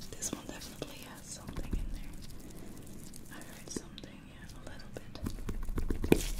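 Soft whispering over small scattered clicks and crackles from nitrile-gloved fingers handling a pimple-popping practice pad.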